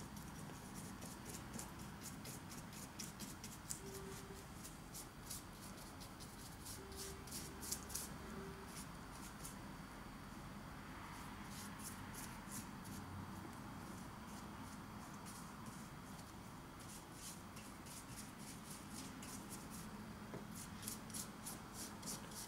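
Paintbrush strokes on bare wood: the bristles, wet with a steel-wool-and-vinegar stain, scratch faintly over a wooden model tunnel portal in quick repeated strokes, several a second, thinning out around the middle.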